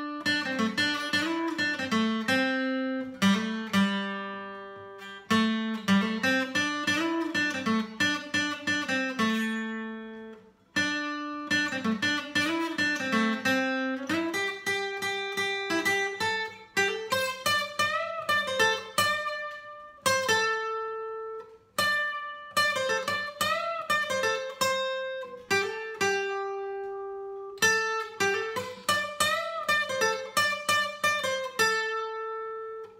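Seagull S6+ acoustic guitar (solid spruce top, cherrywood back and sides) fingerpicked unplugged, playing rising-and-falling arpeggio phrases that repeat, with short breaks about ten and twenty seconds in.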